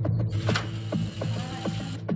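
A car door being opened and a person getting out: a few separate clicks and knocks, with a creak, over a steady low hum.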